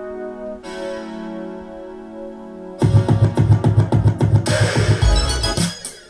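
A keyboard-led song played through a pair of Sony XS-XB6941 4-way oval coaxial car speakers in sealed boxes, with the head unit's Extra Bass on and the treble bands cut. Sustained keyboard chords come first, then a heavy bass-and-drum beat comes in about three seconds in.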